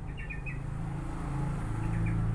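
A small bird chirping: three quick short chirps just after the start and a faint one near the end, over a steady low hum.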